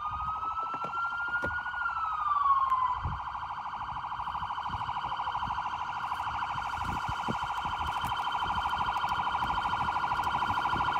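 Police car siren wailing, its pitch rising slowly and falling again, then switching about three seconds in to a rapid, steady yelp that grows slightly louder.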